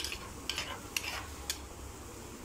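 Steel spoon stirring grated beetroot in a pan, clicking against the pan about four times roughly every half second, over a faint sizzle of the beetroot cooking.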